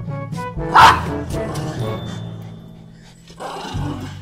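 Background music, with a German Spitz barking once, loud and short, about a second in.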